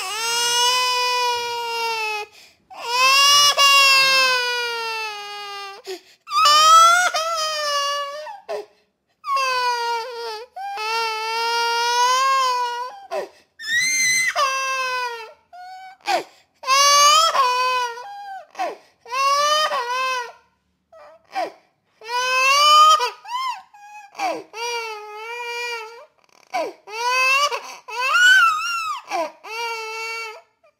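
Baby crying hard: a string of loud wails, each one to three seconds long, with short breaks for breath between them.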